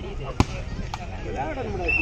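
A volleyball struck hard by hand, a single sharp slap about half a second in, followed by a fainter hit about half a second later. Men's voices call out around it.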